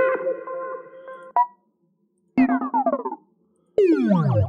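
Synthesized beep sound effects from a royalty-free sound library, previewed one after another: a steady electronic tone lasting about a second and a half with a short blip at its end, then after a pause a shorter tone with falling glides, and near the end a tone sweeping downward in pitch.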